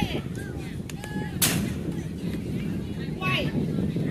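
A single sharp crack of a pitched baseball striking, about a second and a half in, amid high calls from young players.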